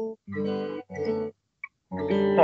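Acoustic guitar played fingerstyle: chords with a simple melody on top, the tune moved to another key that puts it lower. The sound breaks off in short gaps, once for about half a second.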